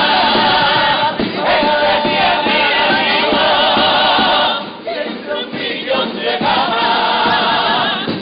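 Carnival comparsa's male chorus singing in harmony with Spanish-guitar accompaniment, the voices holding long notes. The singing breaks off about halfway through and comes back in a second or two later.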